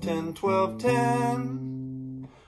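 Acoustic bass guitar plucked: a few short notes, then one note left ringing for over a second, the opening of a one-four-five blues bass line in C.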